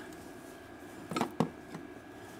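A few short, light clicks and knocks, about a second in, from hands working loose parts on the van's floor under the driver's seat where an amplifier has just been pried up.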